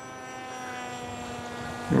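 Electric motor and propeller of an AirModel Sword flying wing, a steady whine at low throttle, its pitch falling slightly.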